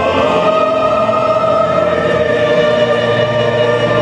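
A choir sings a hymn, holding one long note that slides slowly downward. A steady low accompanying note comes in about three seconds in.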